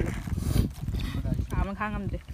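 People's voices, with one short wavering vocal sound near the end, over constant low knocking and handling noise.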